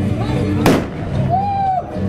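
A single loud bang, like a firecracker going off, a little over half a second in, over steady music.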